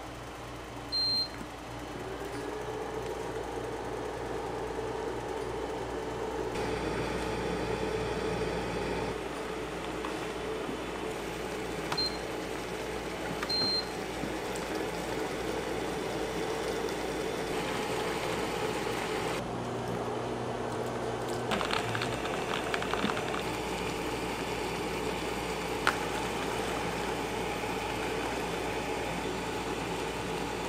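Automatic ramen cooker's button beeps: one about a second in and two short ones around twelve seconds, as its start button is pressed. Underneath is the steady hum of the cooker running.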